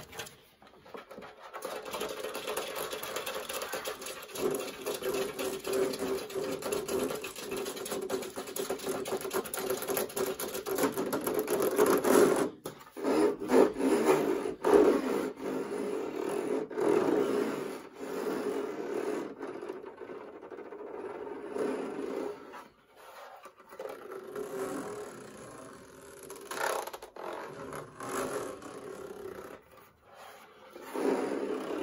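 Fingernails scratching and tapping fast on the plastic housing of a tower fan, close to the microphone. The strokes get louder about halfway through and ease off briefly about two-thirds of the way in.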